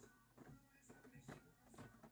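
Near silence, with a few faint crinkles and ticks of a plastic blister-packed toy car five-pack being handled.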